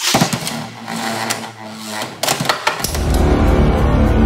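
Beyblade X spinning tops launched into a plastic stadium, whirring and clacking against each other with several sharp hits. About three seconds in, loud dramatic theme music with a heavy beat takes over.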